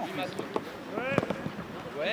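Shouting voices on a football pitch with a few sharp thuds of a football being kicked, the loudest a little over a second in.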